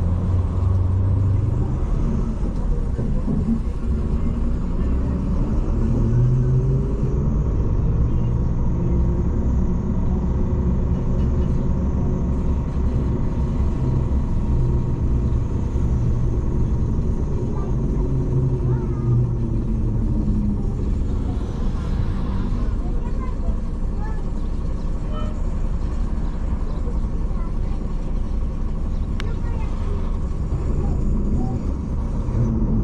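Car engine and road rumble heard while driving, a steady low drone with the engine note rising and falling slowly as the car speeds up and slows.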